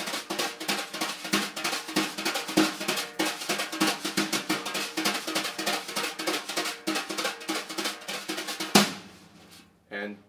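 Wire brushes on a snare drum swinging jazz at a very fast tempo, over 300 beats a minute: a dense run of quick taps with the right hand leading two strokes and the left hand taking the third. It ends with one loud accented hit a little before the end, then dies away.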